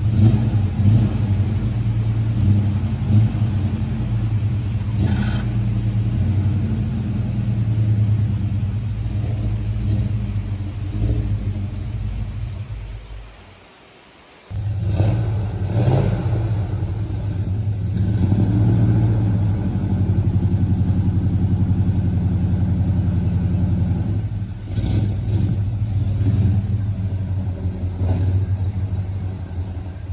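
1977 GMC Sierra's freshly rebuilt engine running as the cab-and-chassis truck drives, the revs swelling now and then. The sound fades away about halfway through and comes back abruptly.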